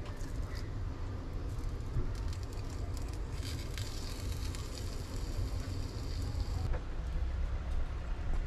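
A gas hob burner being lit under a frying pan: a hiss of gas for about three seconds that ends in a click. Soft handling of fish fillets in the pan and a steady low hum run underneath.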